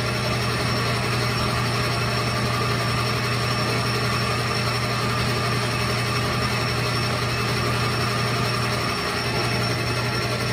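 Metal lathe running with its chuck spinning while a shaft is turned down: a steady machine hum with a low drone, dipping briefly near the end.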